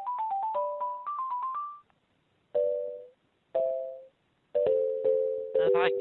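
Telephone hold music heard down the phone line: a keyboard melody of short notes that die away, pausing about two seconds in, then two lone chords and a fuller run of notes. A voice starts near the end.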